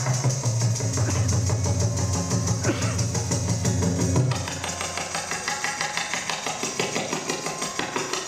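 Tabla playing a Kathak accompaniment rhythm. A deep, resonant bass-drum tone sounds for about the first four seconds, then fades, over quick strokes and the jingle of ankle bells (ghungroo).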